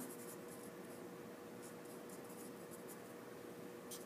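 Faint scratching of a pencil writing a word on paper.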